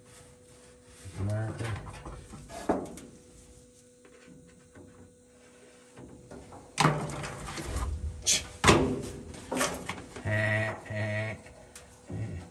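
Stiff card pattern being handled against a steel tube frame: sharp scraping and knocking strokes, loudest and most frequent a little past the middle. Short wordless vocal sounds from a man about a second in and again near the end, over a faint steady hum.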